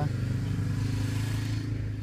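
Four-wheeler (ATV) engine running at a steady, unchanging pitch.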